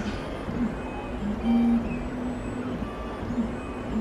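Stepper motors of an iDraw 2.0 pen plotter whining as the carriage drives the pen through its strokes. The low hum jumps between a few pitches every fraction of a second, and it is loudest in a held tone about a second and a half in.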